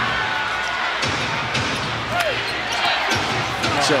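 Basketball being dribbled on a hardwood arena court, a bounce roughly every half second, over steady arena crowd noise.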